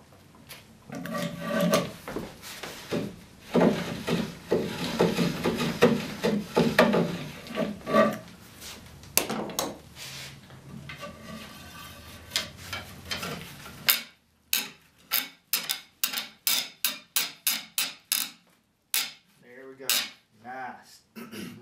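Wood scraping and rubbing on wood in uneven strokes as a spindle hole in a Windsor chair's arm rail is worked and the spindle fitted. Near the end comes a quick run of sharp clicks or knocks, about three a second.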